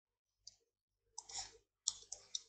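Several faint clicks and taps from drawing a line on a digital screen. There is a small click about half a second in, a brief scratchy stroke around a second and a half in, and a sharper click near the end.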